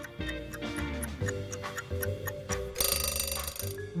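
Quiz countdown-timer sound effect: a clock ticking over light background music, ending with an alarm-clock bell ringing for about a second near the end.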